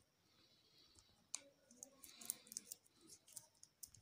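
Near silence, broken by a few faint, scattered clicks and taps of small plastic bottles and caps being handled.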